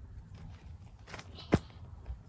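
Rustling and scraping of cord and hands working around a tree trunk and a short stick toggle while a clove hitch is tied, with a sharp knock about one and a half seconds in.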